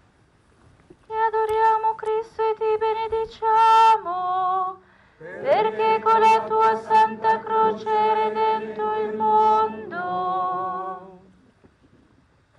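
A woman's voice singing a slow liturgical chant in two phrases. Most of each phrase is held on one reciting note, each closes with a brief cadence, and the second, longer phrase ends with vibrato.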